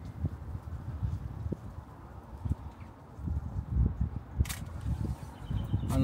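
Low, irregular rumble and thuds of wind buffeting the microphone outdoors, with one short, sharp click about four seconds in.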